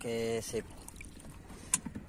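Shallow seawater sloshing and trickling as a hand reaches into it, with a single sharp click near the end.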